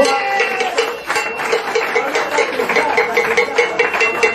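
A small group clapping after a speech, the claps quick and irregular. A short pulsing tone repeats rapidly, about five times a second, in the background.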